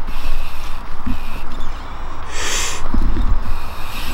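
Mountain bike tyres rolling slowly along a wet, slimy fallen log: a low rumble with a few knocks, and a short hiss a little past halfway.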